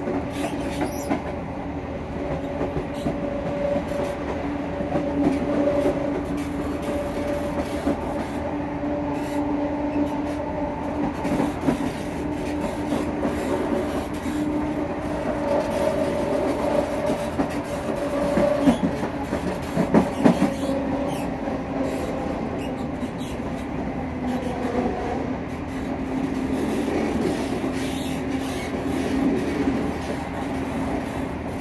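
Class 170 Turbostar diesel multiple unit heard from inside the vestibule while running: a steady hum of the underfloor diesel engine over the rumble of wheels on rail, with scattered clicks and a cluster of louder knocks about twenty seconds in.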